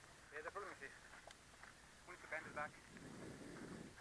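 Quiet stretch with faint, brief voices of riders talking, and a soft low rustling noise near the end.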